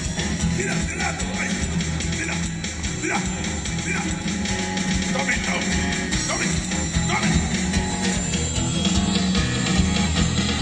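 Live rock band music playing steadily, with a strong bass line under it.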